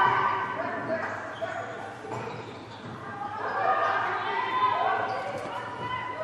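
Volleyball rally in an echoing sports hall: players' voices calling out, with a ball contact about a second and a half in.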